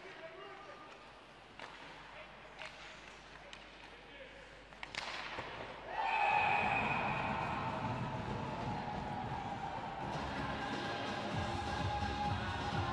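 Ice hockey rink sound: faint, scattered clicks of sticks and puck on the ice. About six seconds in, a sudden, much louder sustained din with steady tones starts as a goal is scored.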